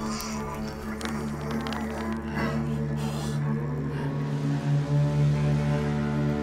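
Film score music built on a low, sustained drone that holds steady, growing fuller about two-thirds of the way through.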